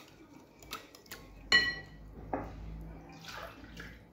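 A small wire whisk stirring water in a glass bowl, ticking against the glass, with one loud ringing clink of metal on glass about a second and a half in.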